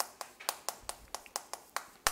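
Chalk striking and scratching on a blackboard as a word is written out by hand: a quick, even run of sharp clicks, about five or six a second.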